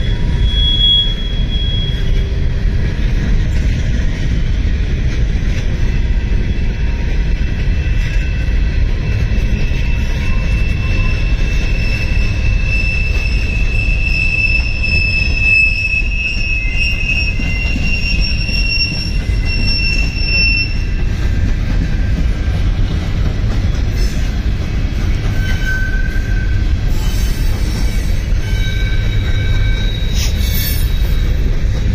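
Freight train cars rolling past with a steady low rumble, with high thin wheel squeal ringing out now and then, strongest in the middle stretch.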